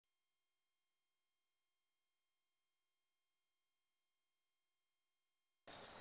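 Near silence with faint, steady, high-pitched electronic tones. Near the end, outdoor background noise cuts in suddenly.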